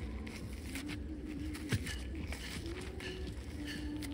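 Gloved hands handling a loosened, dirt-covered rock, with soft crackles and scrapes of crumbling soil and one sharper click a little before two seconds in. A faint wavering hum runs underneath.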